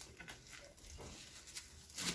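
Faint rustling of plastic cling film as it is pulled from the roll and wrapped by hand around a bell pepper.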